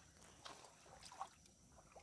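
Near silence: faint outdoor hush with two brief faint sounds, one about half a second in and one just past a second.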